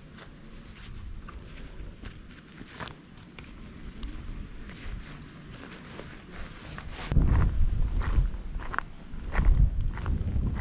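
Footsteps crunching on summit gravel and rock, an uneven run of steps, with a louder low rumble on the microphone from about seven seconds in.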